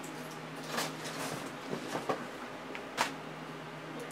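Indoor room tone with a steady low hum, broken by a few short soft knocks or rustles, the sharpest about three seconds in.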